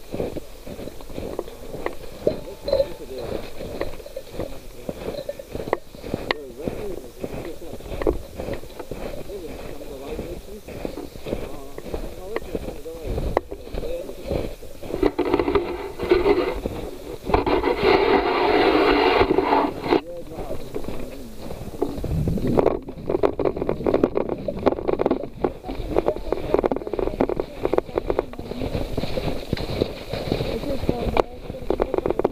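Walking through snow with a body-worn camera: footsteps and the rubbing and knocking of a backpack and its gear against the microphone, with people's voices. A louder, denser stretch comes a little past the middle, and the knocks come thick and fast near the end.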